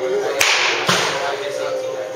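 A baseball bat hitting a ball off a batting tee with a sharp crack, followed by a second knock about half a second later.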